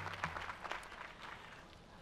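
Audience applause thinning out and fading away.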